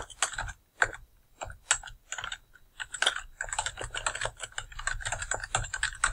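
Typing on a computer keyboard: irregular key clicks, a few at a time at first, then a quick continuous run in the second half as an email address is typed out.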